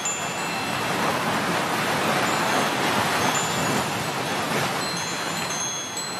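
Steady rushing ocean surf with wind chimes tinkling over it in short, scattered high notes.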